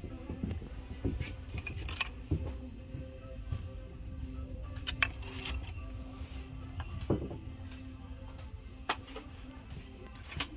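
Glass and ceramic candle holders clinking a few times as they are touched and picked up off a shelf, scattered sharp clinks over background music.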